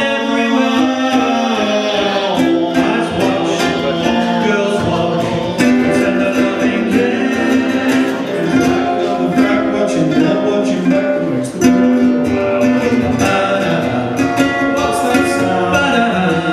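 Live ukulele trio: several ukuleles strummed together with sung vocal harmonies, held notes changing every second or two.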